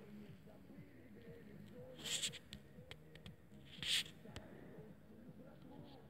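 Quiet background with two brief hissing rustles, about two and four seconds in, from the phone being handled or wind across its microphone, plus a few faint clicks and low wavering sounds underneath.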